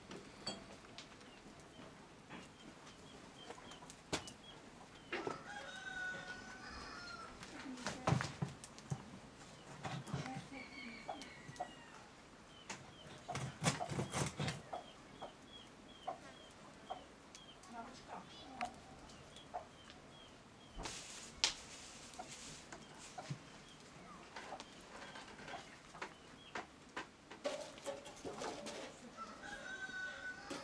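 Domestic fowl clucking, with a small bird chirping in a long series of short high notes and a few sharp knocks.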